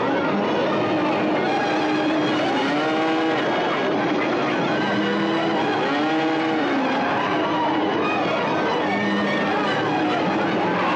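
Cattle lowing, several long rise-and-fall calls in turn over a loud, steady rushing noise, with film music mixed in.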